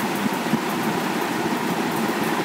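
Steady background hiss with no distinct events: an even, unchanging rush of noise.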